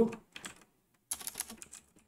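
Typing on a computer keyboard: a few keystrokes about half a second in, then a quicker run of key clicks from about a second in.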